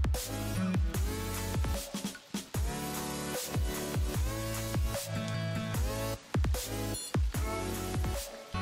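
Electronic background music in a dubstep style: repeated synth notes sliding downward in pitch over a steady bass.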